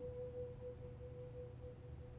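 Faint background music: a single steady held note rings on alone after the rest of the chord drops out at the start.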